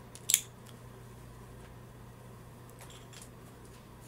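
A single sharp click about a third of a second in, then a few faint clicks and taps near the end, from small makeup items being handled, over a steady low hum.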